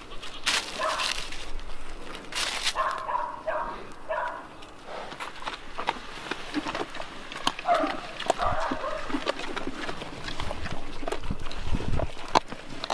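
Mangalitza woolly pigs giving short grunts, a quick run of them about three to four seconds in and more around eight seconds. In the second half they feed at a concrete trough, with chewing and clicking.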